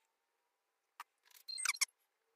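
Plastic resin mixing cup and stir stick being handled: one light click about a second in, then a quick run of small clicks and taps near the end.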